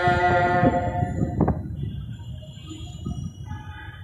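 A long held note of chanted Quranic recitation fades out within the first second or so, leaving a low, uneven rumble.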